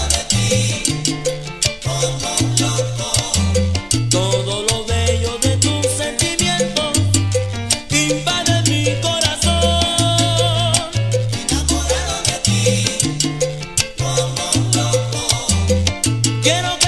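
Salsa music: a 1990 studio recording with a bass line stepping between held notes under steady, dense percussion hits.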